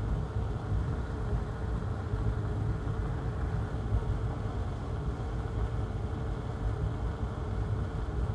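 Steady low machine hum with a faint steady tone in it, unchanging throughout.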